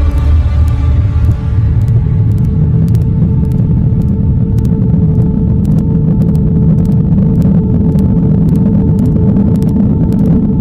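Background soundtrack of a low, steady rumbling drone with a held tone sustained above it.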